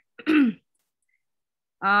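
A woman clearing her throat once, briefly, just after the start.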